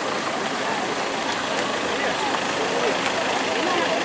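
Steady hubbub of a crowd, many voices overlapping in the background with no single speaker standing out.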